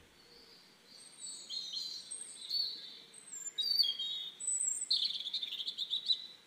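Small birds chirping: short high-pitched notes at several pitches, starting about a second in and growing busier, with a rapid trill near the end.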